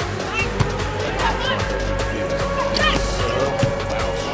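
Background music with a steady beat over the match audio.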